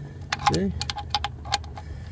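Hand ratchet with a 10 mm socket clicking as it loosens a thermostat housing bolt: a quick run of sharp metallic ratchet clicks, about six a second.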